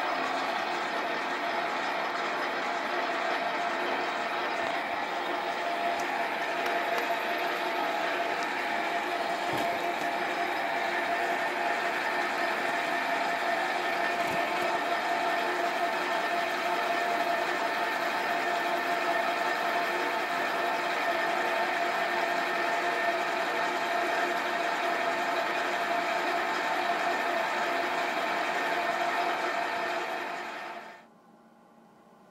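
Bench metal lathe running steadily under power feed while a boring bar takes a fine finishing cut inside a bore in a spinning metal block, with a steady whine from the lathe's drive over the cutting noise.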